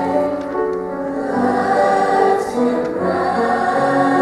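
A large mixed youth choir singing in harmony, holding long notes in several parts.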